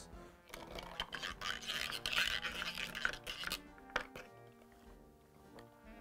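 Bar spoon stirring a cocktail over ice in a glass: a scratchy rattle for a couple of seconds, then a single click about four seconds in. Background music plays under it.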